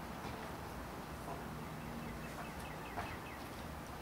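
Quiet outdoor background hiss with a few faint bird chirps between about two and three seconds in, and one small click near the end.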